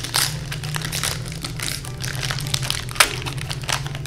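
Plastic clay packet crinkling and crackling as it is twisted and pulled at by hand to open it, with one sharp snap about three seconds in.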